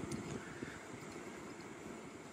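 Quiet room noise with a couple of faint ticks about a second in from a bolt being turned out by hand from an Oldsmobile cast-iron cylinder head.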